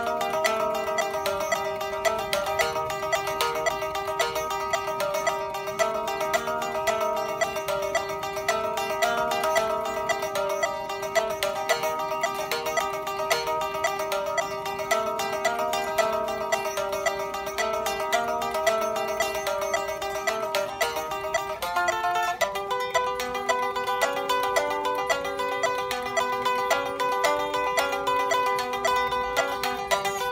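Electric guitar played with fast, even picking across the strings in a repeating pattern, a steady note ringing under the moving notes. About 22 seconds in, the figure changes to a new pattern with lower notes.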